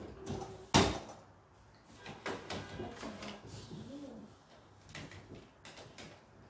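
Clatter of a plastic toy kitchen set being handled: one sharp knock about a second in, then lighter clicks and knocks as toy dishes and play food are set on a tray.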